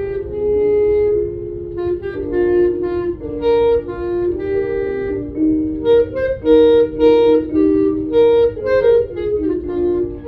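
Clarinet playing a solo melody: a flowing line of changing notes with a few longer held ones, mostly in its lower-middle range.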